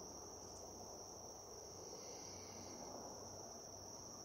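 Faint, steady high-pitched insect chorus, one continuous buzz that does not let up.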